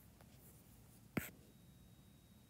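A single sharp tap of a stylus on a tablet's glass screen about a second in. Otherwise very quiet.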